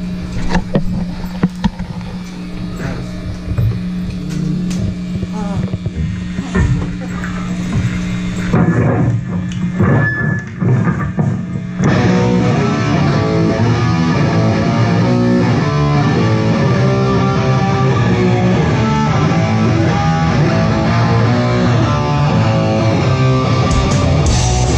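Live rock band on a club stage: a held low note rings under scattered drum and guitar hits. About halfway through, the full band starts playing, with loud distorted electric guitars, bass and drums.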